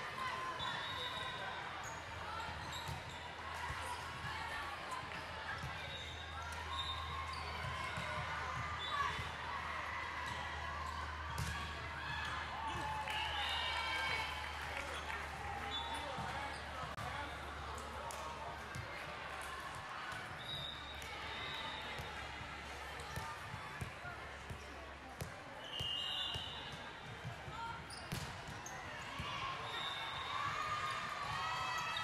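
Busy volleyball hall ambience: volleyballs being struck and bouncing on the hardwood floor, short high squeaks of court shoes, and background chatter of players and spectators.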